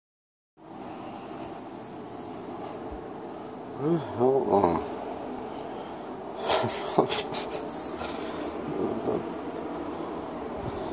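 A man gives a short, low laugh about four seconds in, over a steady background hum and hiss. A few sharp knocks and rustles come a couple of seconds later.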